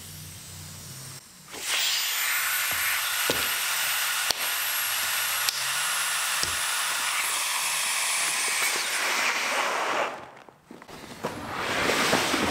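Air hissing steadily into a vacuum press bag as its hose is pulled off and the vacuum is let go. The hiss starts about a second and a half in and stops suddenly near ten seconds, with a few light clicks along the way.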